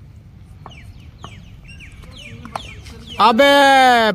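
Faint birdsong of short, falling chirps with a few soft knocks, then about three seconds in a man's loud, drawn-out shout close to the microphone.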